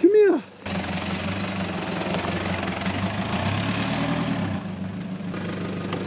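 A vehicle's engine running steadily with a low, even hum as a car pulls up.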